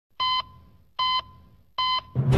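Three electronic heart-monitor beeps, evenly spaced a little under a second apart. Each is a short high-pitched tone with a brief fading tail.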